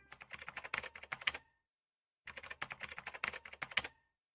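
Computer keyboard typing: two quick runs of keystrokes, with a pause of about a second between them.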